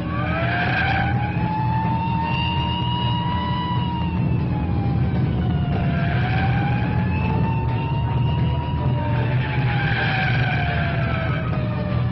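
Police car siren wailing in slow rises and falls over a steady car-engine and road rumble, with short squeals of tyres about a second in, around six seconds and again around ten seconds, as the cars take the bends.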